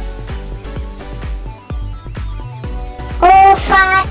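Children's background music with a steady beat, with a bird's high chirps laid over it in two quick sets of three, about half a second in and two seconds in. Near the end a loud child's voice comes in over the music.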